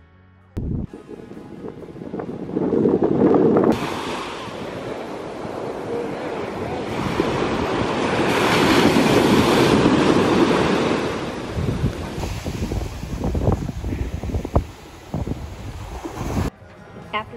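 Ocean surf breaking and washing up on a sandy beach, a rushing noise that swells and ebbs, with wind buffeting the microphone in gusts near the end.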